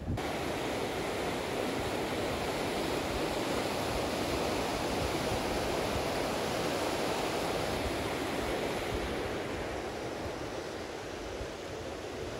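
Fast, shallow mountain river rushing over stones and gravel: a steady roar of water that eases a little near the end.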